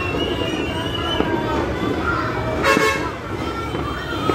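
Horns tooting in a street during New Year celebrations: one long, wavering toot for about the first second, with more shorter toots after it, over people's voices.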